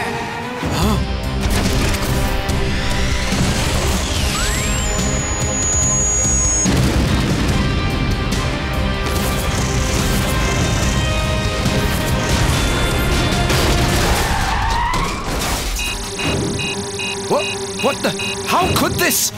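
Action-cartoon battle soundtrack: dramatic music under heavy explosion booms and crashes with a car's motor. A run of quick electronic beeps comes near the end.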